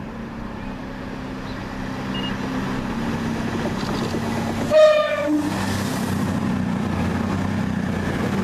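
CrossCountry Voyager diesel multiple unit approaching and passing, its underfloor diesel engines running with a steady drone that grows louder. About five seconds in it gives a short horn blast, a high note followed by a lower one.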